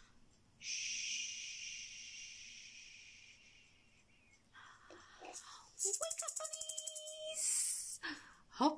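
A woman's long 'shhh' hush, fading away over about four seconds. Near the end comes a quick run of rapid rattling pulses.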